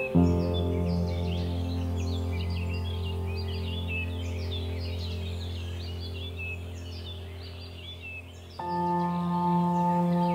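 Calm ambient background music of long held chords, with birds chirping throughout; a new chord comes in about a second and a half before the end.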